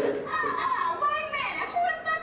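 A high-pitched voice talking or exclaiming, its pitch sliding up and down in short phrases.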